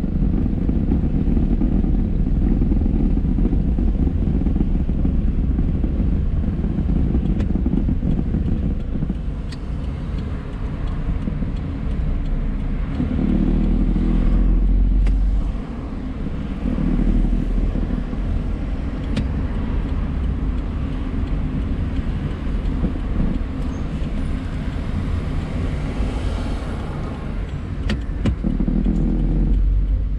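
A car's engine and tyre rumble heard from inside the cabin while driving. The engine grows louder about halfway through, then drops off suddenly, and rises again near the end.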